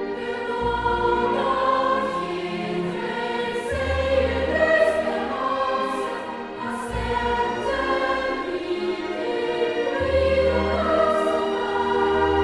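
Children's choir singing a slow Christmas song in long, held notes over orchestral accompaniment, with low bass notes returning every few seconds.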